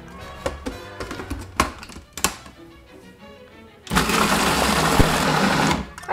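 Food processor motor running for about two seconds as it purees cooked cranberries, starting about four seconds in and cutting off just before the end. Before it, two sharp clicks as the plastic lid is locked on, over background music.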